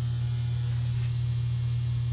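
Electrical transformer humming with a steady, low mains hum.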